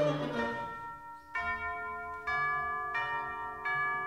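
Chamber-opera orchestral music: the last sung and played notes die away, then four struck, ringing chords follow less than a second apart.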